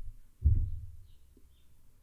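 A single dull, low thump about half a second in, dying away quickly, in a pause between speech.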